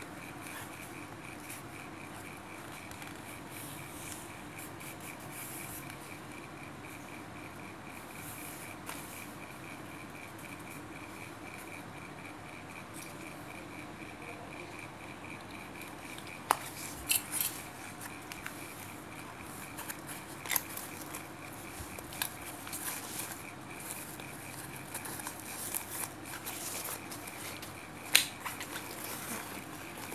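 Satin bag lining being handled: quiet fabric rustling over a steady, faint high whine in the background. In the second half come a few sharp clicks as metal binder clips are handled and clipped onto the fabric.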